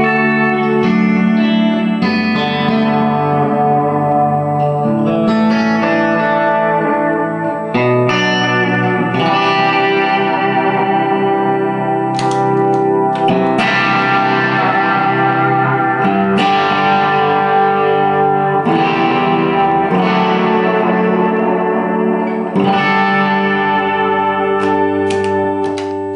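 Electric guitar played through an effects pedalboard into a Diamond Spitfire amplifier set clean, sustained chords ringing and changing every second or two. The chords turn brighter about halfway through.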